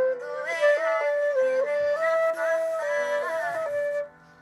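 Concert flute playing a slow melody of held notes that step up and down in pitch, over a lower-pitched accompaniment.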